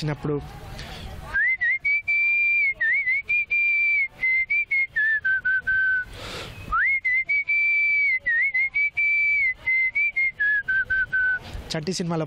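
A man whistling a melody with his lips in two matching phrases. Each phrase opens with a quick upward slide, wavers around one high pitch and steps down lower at its close, with a short breath between them about six seconds in.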